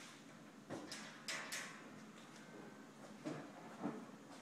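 Rotating cabinet section of a red birch entertainment unit turning on Reversica swivel hardware, giving a few faint knocks and clicks: a cluster in the first half and two more near the end.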